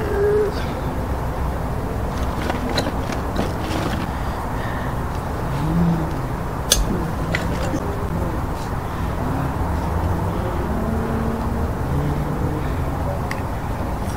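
Steady low outdoor background rumble, with a few light clicks and one sharper click about halfway through.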